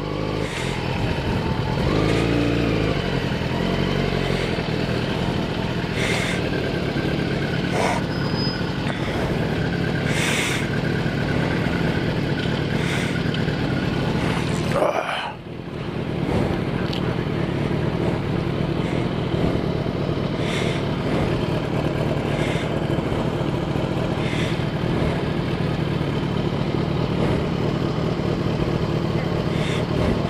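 Motorcycle engine running steadily at low speed, with a constant low hum, mixed with road and wind noise on the camera mic; the sound dips briefly about halfway through.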